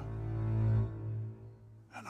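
Dark film score music: a low sustained drone that swells over the first second and then fades.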